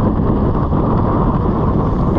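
Steady wind noise buffeting the camera's microphone, with mountain bike tyres rolling over a gravel track.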